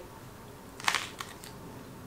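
A bite taken into a pita sandwich with cucumber: one short crunch just under a second in, followed by a faint tick.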